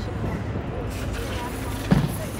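Steady low rumble of outdoor city background noise, with faint voices talking in the background and a single sharp thump near the end.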